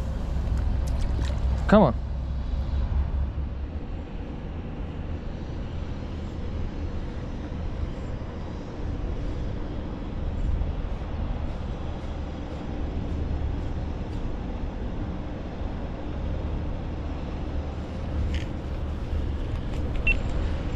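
Steady low outdoor rumble with an even hiss over it, and a brief vocal sound about two seconds in.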